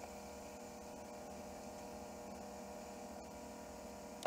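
Faint, steady electrical hum with hiss, a few unchanging tones held throughout.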